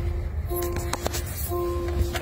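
A single electronic tone repeating in half-second beeps about once a second, over the low rumble of a moving car's cabin.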